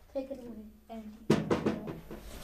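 A short run of about four quick drum hits, starting a little over a second in, after a brief spoken "mm-hmm".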